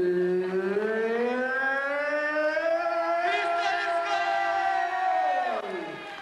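A man's long, drawn-out siren-like wail into a microphone through the hall's PA: one sustained voice tone that rises slowly in pitch, holds, then slides down and dies away near the end.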